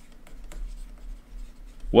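Stylus tapping and scratching on a pen-input screen as a word is handwritten, heard as faint short ticks and strokes over a low hum.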